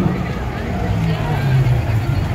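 A car engine running steady and close, with people talking around it.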